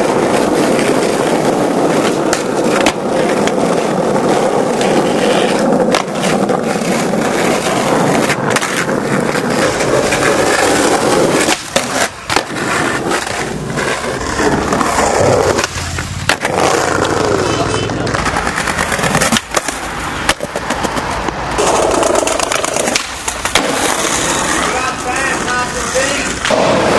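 Skateboard wheels rolling fast over rough asphalt, a steady loud rumble for the first dozen seconds, then broken by several sharp wooden clacks of the board popping and landing.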